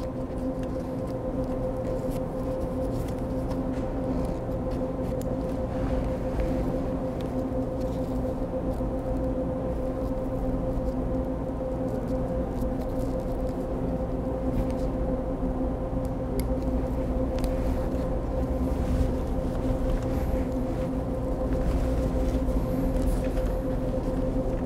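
Steady machinery hum holding a few constant tones over a low rumble, with a few faint clicks from hands handling the motor and its cables.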